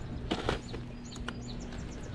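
A few light clicks and knocks, likely handling among loose rocks, with faint high bird chirps in the background.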